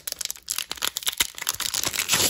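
A Pokémon booster pack's foil wrapper being torn open by hand: a quick run of crinkles and crackles.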